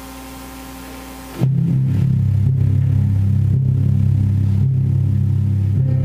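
Steady hiss and electrical hum, then about a second and a half in a loud, low sustained chord from the chamber ensemble starts suddenly and holds steady.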